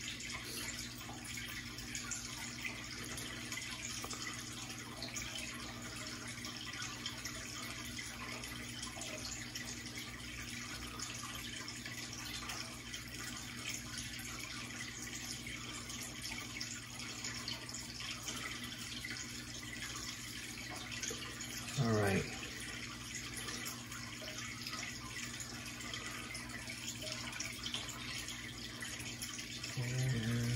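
Steady trickle and splash of water from an aquarium running in the room. About two-thirds of the way through there is one short hum-like vocal sound.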